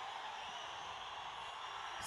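Faint, steady hiss of a large venue's room noise, with no distinct sounds.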